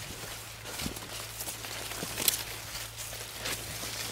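Maize stalks and leaves rustling as someone pushes through a cornfield on foot, with footsteps and a few sharper crackles of leaves.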